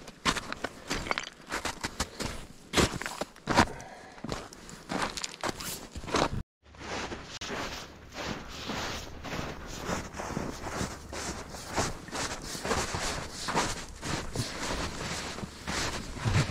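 Footsteps crunching downhill on crusted snow and frozen gravel, steady one after another, with a brief dropout about six seconds in.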